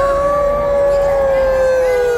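A person in the crowd letting out one long, loud held 'woooo' cheer, sagging slowly in pitch towards the end.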